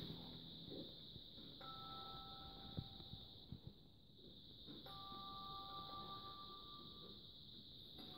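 Near silence: faint room tone with a steady hiss. Twice, a faint pair of steady tones is held for about two seconds.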